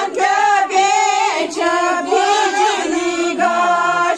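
Voices singing a song together, with long held notes that bend in pitch.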